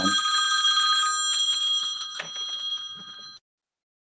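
A ringing tone made of several steady high pitches, like a bell or phone ring, coming through an open microphone on a video call; it holds, then fades and cuts off suddenly shortly before the end, with a single click partway through.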